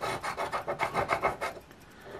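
Scratch-off lottery ticket being scraped with a hand-held scratcher: quick rasping strokes, about ten a second, that thin out and stop near the end.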